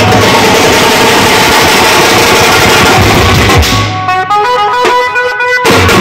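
Street band drums played hard with sticks under loud music: a dense wash of drumming for the first four seconds, then a stepped melody of held notes over the drums, with a brief break just before the end.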